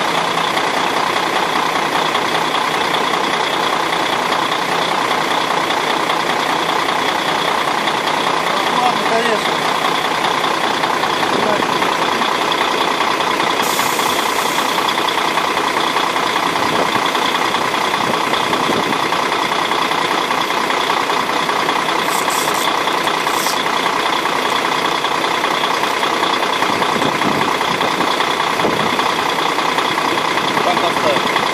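KamAZ truck's diesel engine idling steadily, with two brief hissy swishes, one about halfway through and one a little later.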